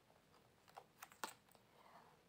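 Faint, soft clicks of a tarot deck being handled: cards shuffled and one drawn from the deck, a handful of quiet taps near the middle.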